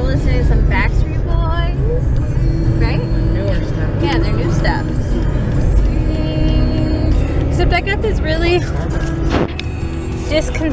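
Talking and background music over the steady low rumble of a car's cabin.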